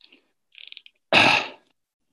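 A man makes a short, loud breathy throat sound, like a throat-clearing, about a second in, after a fainter one just before it.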